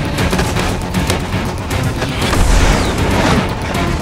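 Action film soundtrack: dramatic music mixed with sound effects, with a deep boom and a rushing whoosh a little past halfway.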